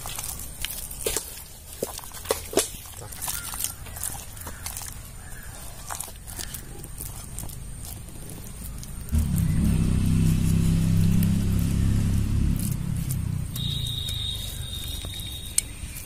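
Hands rubbing wet masala paste into whole tilapia in an aluminium pan, with small wet squelches and scattered clicks against the metal. About nine seconds in a low steady drone starts suddenly and lasts about three seconds, louder than the handling.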